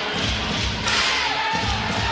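Basketball arena game sound: crowd noise with music over the arena PA, including a held note in the second half, and a few dull thuds.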